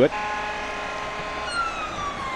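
Fire engine siren: a steady pitched sound, then about three-quarters of the way through a siren tone comes in high and slides slowly downward.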